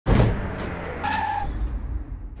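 Tire-skid sound effect: a vehicle sliding with rumble and tire noise, with a high squeal held for about half a second about a second in.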